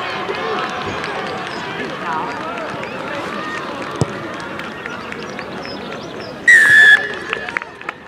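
Spectators chatting on the touchline, a single sharp thud about four seconds in as the conversion kick is struck, then one loud referee's whistle blast of about half a second near the end.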